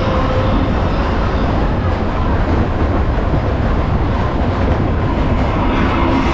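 Waltzer car spinning at speed on the moving ride platform: a steady, loud rumble.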